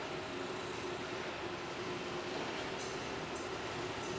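Steady mechanical noise with a faint, constant low hum, unchanging in level.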